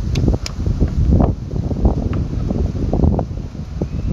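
Wind buffeting the microphone in gusts, with a couple of sharp clicks about half a second in.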